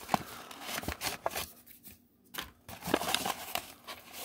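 Thin cardboard blind-box packaging being torn open by hand along its perforated flap: irregular rustling and tearing with several short sharp clicks.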